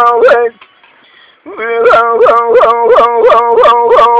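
Unaccompanied Kurdish hore singing by a man: a loud, long wailing line with rapid pitch trills. The line breaks off about half a second in for a breath and starts again about a second and a half in.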